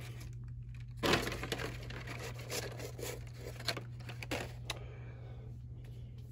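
Plastic and cardboard toy blister packs rustling, crinkling and clicking as they are handled, over a steady low hum.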